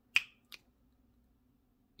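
A single crisp finger snap, followed about half a second later by a fainter click.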